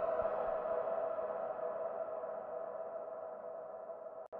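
The outro of a trance track: a held synth chord slowly fading out, with a low beat that stops just after the start.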